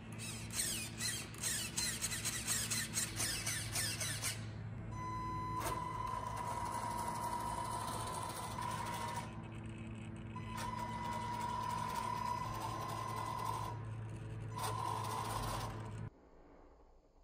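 Brushed 550 motor and gear drivetrain of a 1/10 RC crawler whining at a steady pitch while driving, in three stretches with short pauses between, starting about five seconds in. Before that, a few seconds of rapid clicking and rattling.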